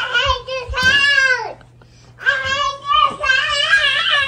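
A toddler singing out in a high, wavering voice: two long sung phrases with a short pause between.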